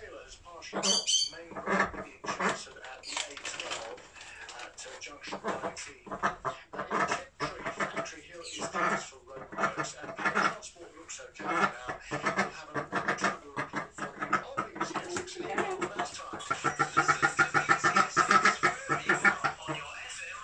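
Khaki Campbell duck quacking and chattering repeatedly. Near the end comes a fast, loud run of about four quacks a second.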